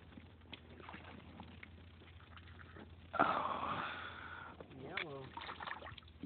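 A person's loud, breathy exhale about three seconds in, fading over about a second, after a few seconds of faint clicks. A short voiced sound follows near the end.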